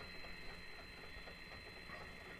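Home-built coil winder's geared stepper motor turning the bobbin spindle at full speed, a faint steady high whine over a low hum.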